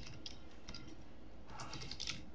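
Computer keyboard typing: a few faint keystrokes, then a quicker run of key clicks near the end.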